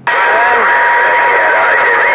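HR2510 transceiver on receive just after unkeying: loud, steady band static with a thin steady whistle, and faint garbled voices wavering through the noise.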